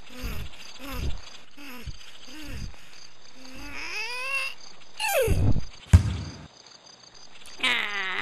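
A cartoon chick character's voice making a series of short grunts, then a rising cry and a loud falling one. A single sharp click comes about six seconds in, and a loud cry starts near the end.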